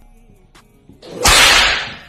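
A loud swishing whoosh lasting under a second, starting about a second in and trailing off.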